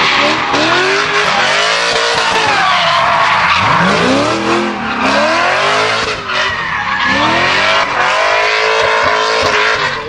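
Lexus IS300 drift car sliding sideways: the engine revs up and down over and over while the rear tyres screech and spin against the tarmac.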